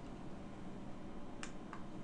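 Quiet room tone, a faint steady hiss and low hum, broken by a short sharp click about one and a half seconds in and a fainter one just after.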